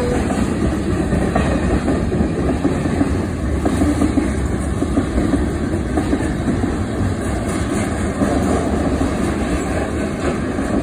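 CSX manifest freight train's cars rolling past close by, a steady loud rumble of steel wheels on rail with the clatter of wheels over the joints.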